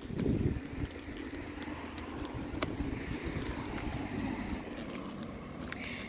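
Outdoor street noise: wind buffets the microphone for about the first second, then a steady hum of road traffic carries on underneath.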